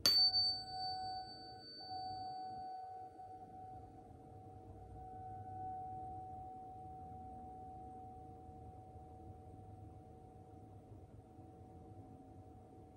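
A 741 Hz tuning fork is struck once: a sharp metallic tap, then a pure tone that rings on through the whole stretch, slowly fading. Its high, bright overtones die away within the first few seconds.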